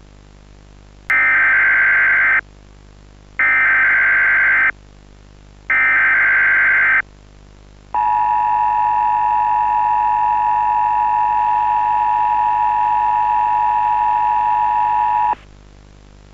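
Emergency Alert System broadcast tones: three short bursts of screechy SAME header data, then the steady two-tone attention signal held for about seven and a half seconds before cutting off suddenly, over a low steady hum.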